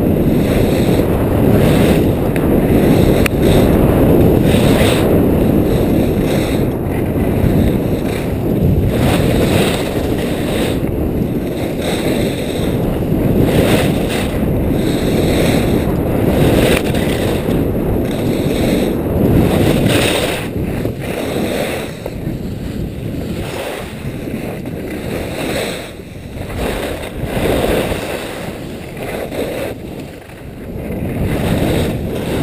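Wind rushing over the microphone of a skier moving fast downhill, with the swelling hiss and scrape of skis carving turns on hard-packed snow roughly every second or two. It eases a little in the last third.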